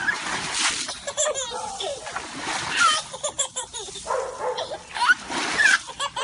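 Water splashed by hand in a shallow inflatable kiddie pool, several splashes in a row.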